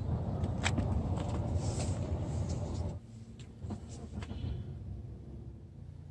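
Low vehicle rumble with a few brief knocks. About halfway in it drops suddenly to a quieter low hum heard inside a car's cabin.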